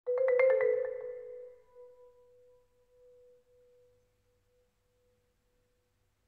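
A quick flurry of about six marimba notes struck in the first second, then a single tone rings on and fades away over the next few seconds, leaving silence.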